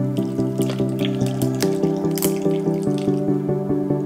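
Background music with sustained chords, over liquid splashing and dripping as cold coffee is poured onto ice in a plastic cup.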